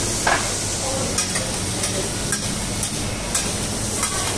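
Seafood sizzling on a steel flat-top griddle, with metal spatulas scraping and clicking against the plate every half second or so.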